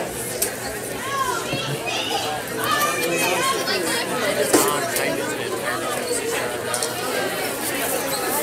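Indistinct chatter of several people talking at once in a large, echoing hall, with a couple of sharp knocks, the loudest about four and a half seconds in.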